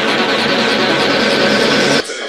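Psytrance track in a build-up: a dense wash of noise sweeping slowly upward in pitch over the music, cutting off abruptly at the end into a sparser breakdown.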